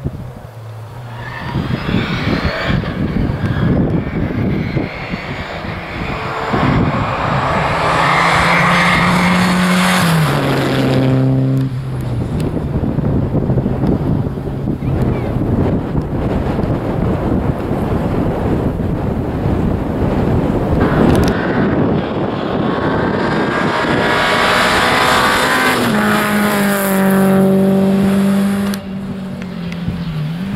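Two rally cars passing one after the other at full throttle on a special stage. The engines rev up through the gears, then drop in quick steps as the drivers downshift and brake for a corner, first about ten seconds in and again near the end.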